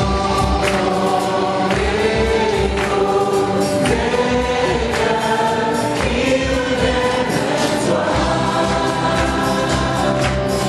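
Gospel choir singing live with band accompaniment: sustained choral notes over a bass line and steady percussion hits.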